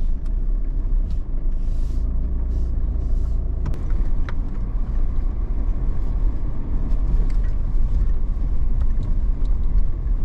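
Steady low rumble of a four-wheel-drive's engine and tyres as it drives along beach sand, heard from inside the cabin, with a couple of light clicks about four seconds in.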